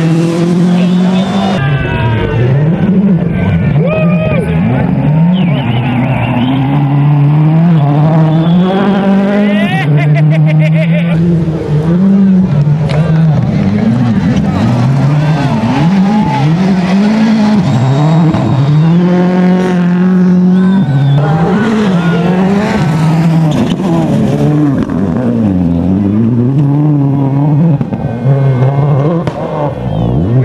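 Turbocharged four-cylinder World Rally cars driven hard on gravel, the engine note rising and dropping over and over through gear changes and corners, with tyres sliding on loose gravel. A short burst of rapid crackles comes about ten seconds in.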